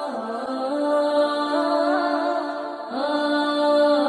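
A voice chanting a slow, unaccompanied-sounding melody in long held notes with ornamented turns between them, pausing briefly near the end before taking up a new held note.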